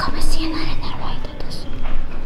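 A person whispering close to the microphone.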